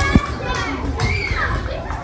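Several children's voices chattering and calling out over one another as they play, with a brief low thump just after the start.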